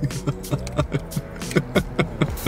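Men laughing: a quick run of short ha-ha pulses, each dropping in pitch.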